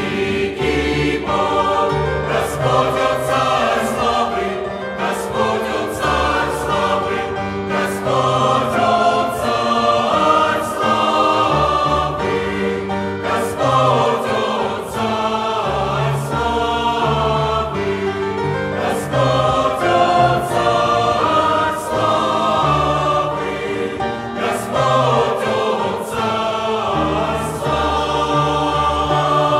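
Mixed choir of men's and women's voices singing a hymn in Russian in full harmony, the chords changing every few seconds with no pause.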